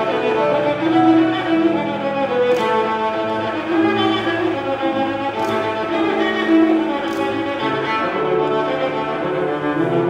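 Cello bowing a lively scherzo melody in sustained notes over grand piano accompaniment.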